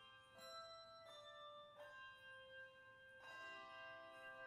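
Handbell choir ringing a slow passage: several chords struck in turn, each left ringing on into the next.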